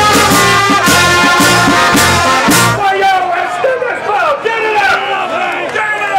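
Live brass band with a drum beat playing loudly, then stopping suddenly about three seconds in. A crowd follows with shouts and cheers.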